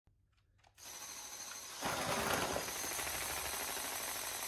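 A VEX robot's motors running as it drives over carpet into a line of game discs and its intake takes them in: a steady mechanical whirring rattle. The rattle starts a little under a second in and gets louder about two seconds in.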